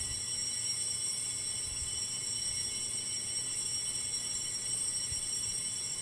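Altar bells (sanctus bells) rung continuously at the elevation of the consecrated host, a steady high ringing.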